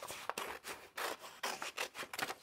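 Scissors snipping through a sheet of old ledger paper, a run of several quick cuts in a row, with the paper rustling as it is handled.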